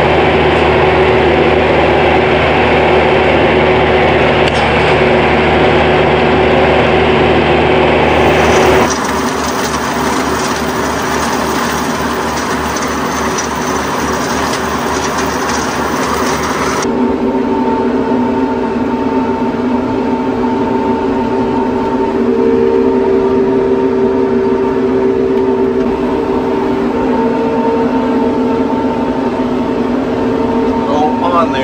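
Tractor engine running steadily under load while driving a RhinoAg TS10 ten-foot flex-wing rotary cutter through tall weeds. The sound changes abruptly twice, about nine and about seventeen seconds in. In the middle stretch there is a fast regular pulsing, and in the last stretch a steady whine rides over the engine.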